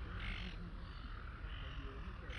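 A bird calling outdoors: one call about a quarter of a second in and a fainter one near the end, over a steady low background rumble.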